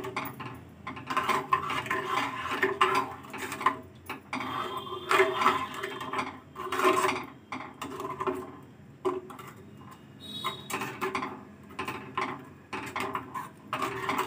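A metal spoon stirring thick chutney in a steel saucepan, scraping and knocking against the pan's sides and bottom in irregular strokes.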